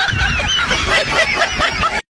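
High-pitched laughter, a rapid run of short cackles.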